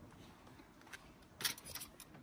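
Faint clinks, then a short burst of metal clatter about one and a half seconds in, as a street bakso vendor handles the lid of his steel soup pot.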